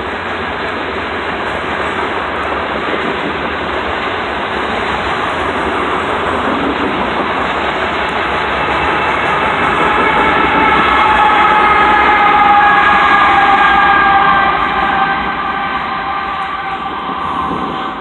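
A freight train rolling past: a steady rumble and rattle of hopper cars on the rails, growing louder as the locomotives come by about ten seconds in. At that point several high steady tones join in and slowly fall in pitch, then the sound eases off near the end.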